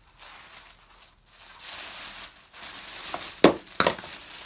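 Tissue paper rustling and crinkling as it is handled and lifted out of a cardboard box, with two sharp knocks close together near the end.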